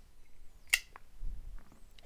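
Folding pocket knives handled as one is lifted off and another set down: one sharp click a little before the middle, a fainter tick just after, and faint handling rustle.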